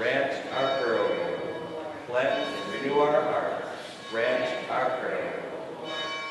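A man's voice speaking in a large, echoing church, in three short phrases, with faint steady high ringing tones underneath.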